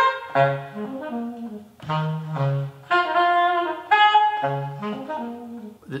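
Unaccompanied tenor saxophone improvising an extended intro: a short figure of low notes answered by runs of higher ones, repeated over and over.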